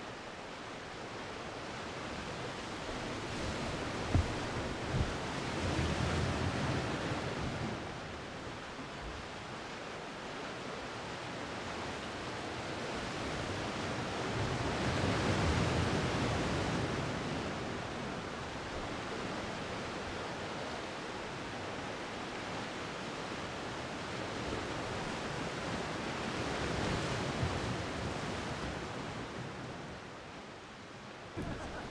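Sea surf washing onto a rocky boulder shore, a steady rush that swells and fades in long surges about every ten seconds. Two sharp knocks come about four and five seconds in.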